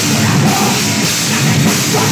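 Heavy metal band playing live and loud: distorted electric guitar, bass guitar and drum kit.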